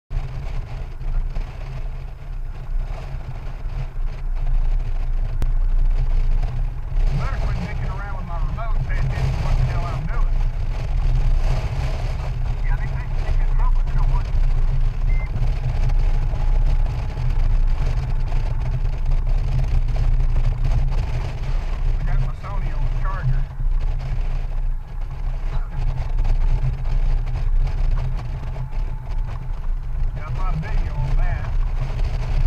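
Steady wind rush on the camera microphone over the Honda Gold Wing GL1800's flat-six engine, riding at road speed. The sound is a constant heavy low rumble.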